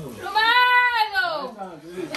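A person's long, high-pitched vocal exclamation that rises and then falls in pitch over about a second.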